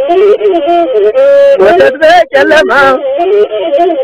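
Ethiopian azmari song: a singer's ornamented, wavering vocal line, with melismatic bends and short breaks, accompanied by the bowed one-string masinko.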